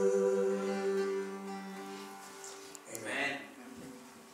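The last chord of an acoustic worship song, acoustic guitar and held singing voices, ringing on and fading away. About three seconds in there is a short burst of voice.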